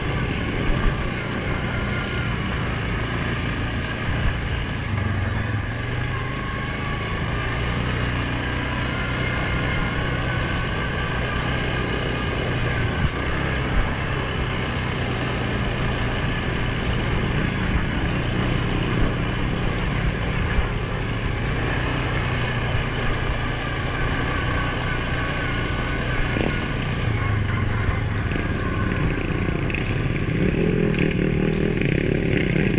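Suzuki King Quad 750 ATV's single-cylinder engine running steadily while riding, its pitch drifting a little up and down with the throttle, with a few brief knocks.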